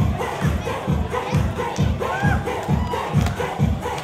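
Dance music with a fast, steady bass-drum beat, about two and a half beats a second, under a crowd shouting and cheering. A brief rising-and-falling whoop or whistle cuts through about halfway.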